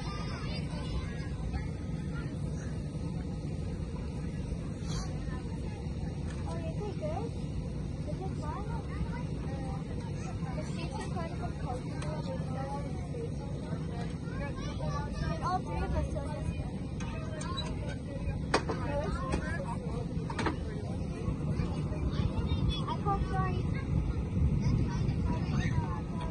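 Outdoor ambience: indistinct distant voices over a steady low rumble, with a few faint clicks.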